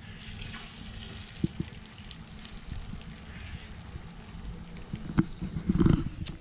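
Beaten eggs sizzling steadily as they are poured into a hot nonstick frying pan greased from bacon. There are a couple of light clicks in the middle, and a low bump near the end.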